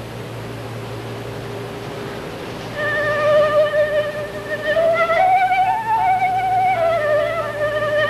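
Concert flute playing a slow, singing melody with vibrato: it enters about three seconds in on a long held note, then rises step by step and falls back, a demonstration of the flute's expressive cantabile playing. A steady low hum from the recording lies underneath.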